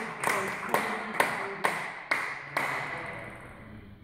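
Spectators' applause dying away, with sharp claps standing out at a steady pace of about two a second until near three seconds in.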